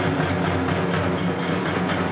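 Kagura festival music: a large barrel drum and small hand cymbals keeping a quick, steady beat, about five strokes a second.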